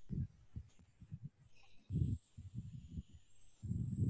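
Irregular low, muffled thumps and bumps on a video-call microphone, loudest about two seconds in, with a faint steady high tone behind them.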